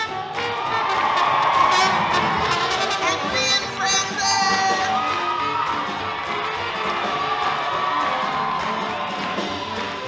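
Live big band playing swing with brass, under a crowd cheering and whooping. The cheering swells about a second in and eases off over the following seconds.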